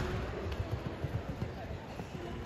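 Irregular dull thuds of a loose horse's hooves on the arena's sand footing, under faint voices echoing in the hall.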